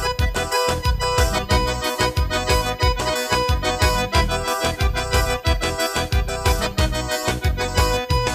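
Instrumental forró pisadinha played live on an electronic keyboard: held organ-like melody notes over a steady, evenly pulsing bass beat.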